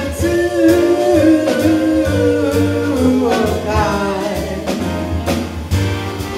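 Jazz combo of piano, bass and drums playing behind singing, with long held vocal notes that bend and glide between pitches and cymbal strikes recurring throughout.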